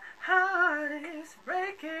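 A man singing a pop song unaccompanied in a high register, two short sung phrases with a brief breath between them.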